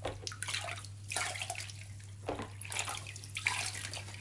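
Water in a plastic basin splashing in irregular bursts as it is scooped over a guinea pig to rinse off shampoo.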